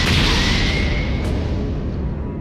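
Anime fight sound effect of a heavy punch impact: a loud, sustained blast of noise that eases slightly near the end, with music underneath.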